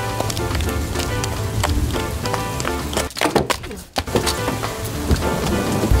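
Background music with a steady beat over a rain sound effect, cutting out briefly about three and a half seconds in.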